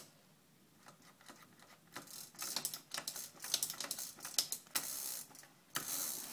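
Beaded cord chain of a roller shade being pulled through its clutch mechanism, a rapid, uneven run of clicks and rattles starting about two seconds in.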